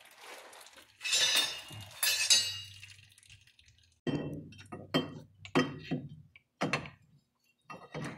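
Large steel open-end wrench clinking and rattling against the backhoe's hydraulic lines and fittings as it is worked in toward a loose hydraulic line fitting. There is a scraping rattle of metal about a second in, then a run of separate clanks from about four seconds on.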